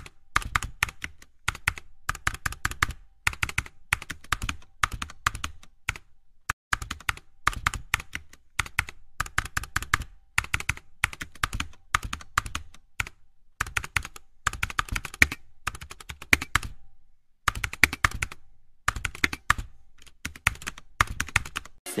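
Computer keyboard typing: quick, irregular keystrokes in runs, with short pauses about six seconds in and again around seventeen seconds.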